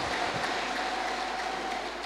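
Large audience applauding, a dense even clatter that slowly dies away toward the end.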